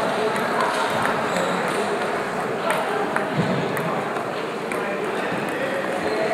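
Table tennis balls clicking sharply off bats and tables in rallies, over a steady hubbub of voices in a large sports hall.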